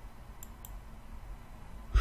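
Two faint, short clicks close together about half a second in, over a low steady hum of room tone.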